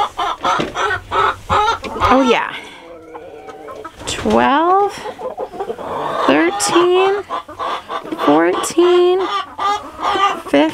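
Hens clucking close by: quick short clucks at first, then longer drawn-out calls, with a rising squawk about four seconds in.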